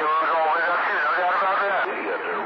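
A voice coming in over CB radio skip on channel 28, AM speech riding on a steady hiss of static. The signal jumps up in strength right at the start.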